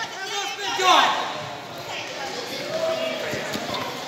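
Indistinct shouting and talk from coaches and spectators, with no clear words.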